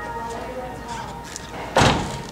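The driver's door of a 2013 Ford Mustang Boss 302 slammed shut: a single loud thud near the end.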